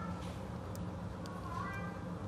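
Cat meowing faintly twice: one short call at the start and another near the end, over a steady low hum.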